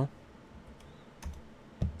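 Faint computer keyboard keystrokes, a short run of quiet key clicks.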